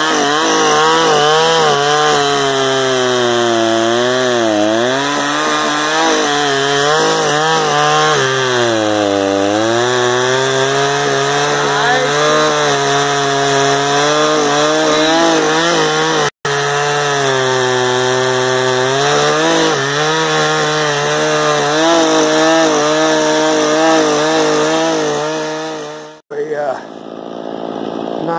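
Poulan Pro 50cc two-stroke chainsaw with a 20-inch bar running at high revs while cutting through a 17-inch log; its engine pitch dips and recovers twice. The sound breaks off for an instant about halfway, and cuts off suddenly near the end.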